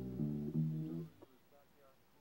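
A short snippet of music playing from a vinyl record on a turntable, a few held notes that change pitch, cut off abruptly about a second in as the record is skipped through.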